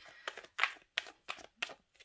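A large deck of oracle cards being shuffled by hand, the cards brushing against each other in short bursts, about three a second.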